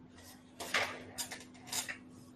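Three short noisy bursts of handling noise, about half a second apart, the first the loudest, like objects being moved or set down on a desk, over a faint steady hum.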